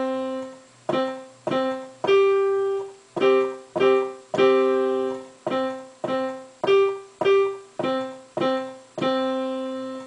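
Digital piano playing a simple beginner's tune with both hands in a steady beat: single notes and two-note chords around middle C, some held twice as long as the others as half notes. The last note is held out near the end.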